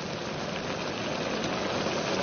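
Chicken and mushroom stew boiling in a wok over the flame: a steady hiss of bubbling liquid.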